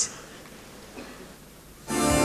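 A short hush of faint hall tone, then near the end the festival orchestra comes in at once with a held, full chord: the start of the song's introduction.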